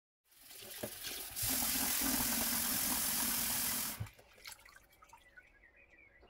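Kitchen tap running into a glass bowl of dry African breadfruit (ukwa) seeds in a stainless-steel sink, filling it to wash out the sand. The flow starts softly and comes on full for about two and a half seconds before being shut off, followed by light drips and small splashes.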